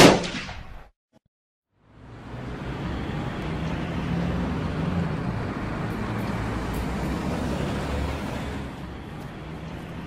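A single loud boom that dies away within a second, then after a short silence a steady low rumble that eases slightly near the end.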